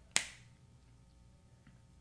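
A single sharp finger snap right at the start, with a short room echo.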